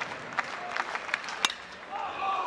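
Ballpark crowd noise with the sharp crack of a metal bat hitting a pitched fastball, about one and a half seconds in.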